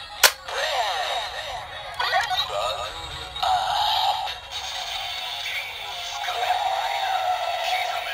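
A sharp click of the button on a DX Gashacon Bugvisor II toy. Its small built-in speaker then plays electronic sound effects with sweeping tones, going into synthesized vocal music.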